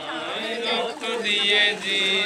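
Voices chanting in a rising and falling line, then holding long, steady notes in the second half.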